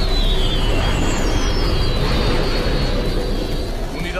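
Film sound effect of X-wing starfighter engines flying past: a loud, steady low rumble with a high whine that falls in pitch, once at the start and again between one and two seconds in.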